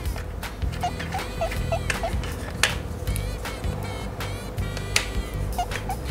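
Background music with a steady low beat and short repeated plucked notes. Two sharp clicks stand out, one about halfway through and one near the end.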